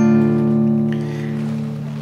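A D minor chord on a classical guitar, strummed once just before and left ringing, its notes sustaining and slowly fading.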